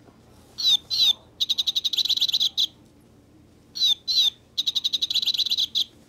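Plush parrot toy's squeaker sound unit playing a recorded bird call when squeezed: two quick high chirps, then a fast high trill. The same call plays twice.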